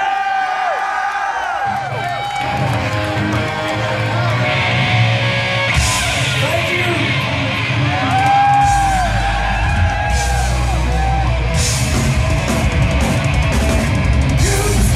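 Live heavy rock band playing the opening of a song: distorted electric guitars with long bending notes, bass and drums coming in about two seconds in, the low end growing heavier past the middle, and crash cymbals hit several times.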